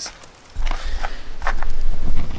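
Camera handling noise: a heavy low rumble on the microphone starting about half a second in as it is picked up and carried, with scattered knocks and footsteps on gravel.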